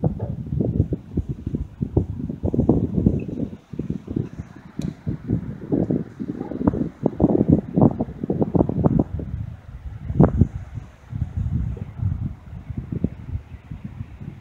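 Wind buffeting the microphone in irregular gusts, a loud low rumble that comes and goes with brief lulls.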